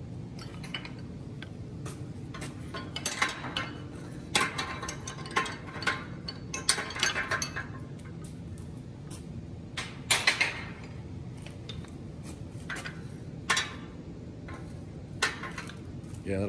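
Hammers clinking and clattering against the welded steel rings and rail of a tool holder as they are dropped in and hung one by one, in a scattered series of metal-on-metal clinks.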